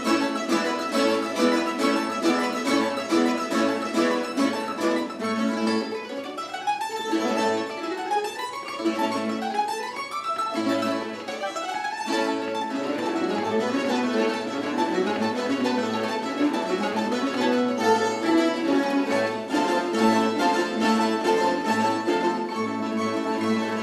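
A plectrum orchestra of mandolin-family instruments and guitars playing a piece together with quick, dense picking. About six seconds in comes a string of rising runs, one after another, before the full ensemble texture returns.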